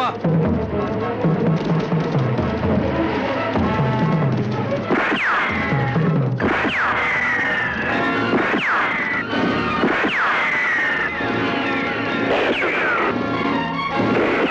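Film action background music, with a string of revolver shots starting about five seconds in. Several of the shots are followed by a falling ricochet whine.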